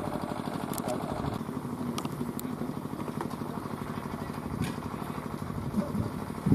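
Large electric pedestal fans running with a steady low drone, with a few faint clicks over it.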